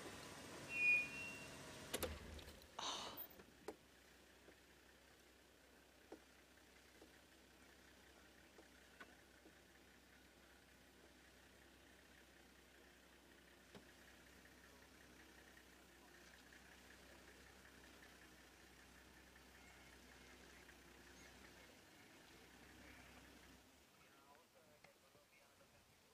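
Near silence: faint outdoor ambience with a low steady hum and a few scattered soft clicks. A brief high chirp sounds about a second in.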